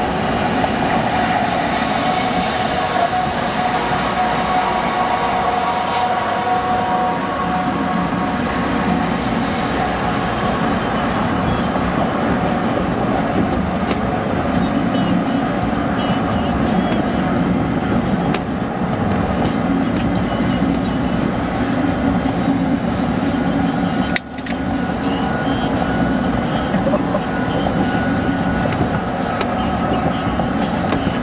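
Steady tyre and engine noise inside a car cruising at highway speed, dipping for an instant about 24 seconds in.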